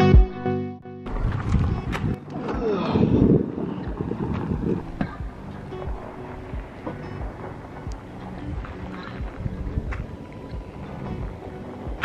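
Guitar music ending about a second in, then wind gusting over the microphone outdoors, with uneven low rumbles.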